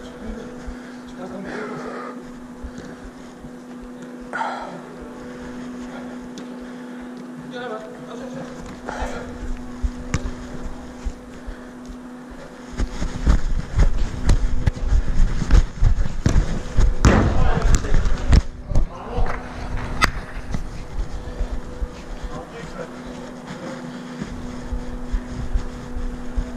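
Chest-mounted camera jostled as the wearer runs on artificial turf. Over roughly ten seconds from about halfway in, there is a heavy low rumble with repeated thumps, under a steady low hum and scattered distant shouts from players.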